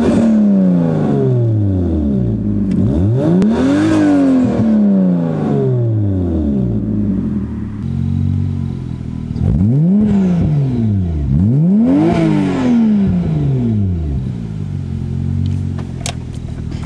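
Toyota JZ-series turbocharged straight-six revved in place with no load: quick blips that rise and fall back, near the start and about four seconds in, then a steady idle, then two more blips about ten and twelve seconds in.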